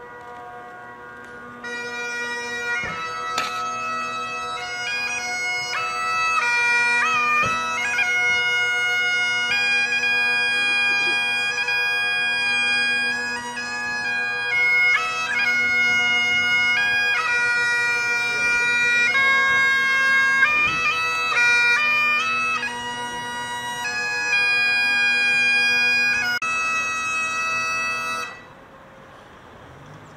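Highland bagpipes playing a melody over their steady drones. The chanter comes in about two seconds in and the playing stops abruptly shortly before the end.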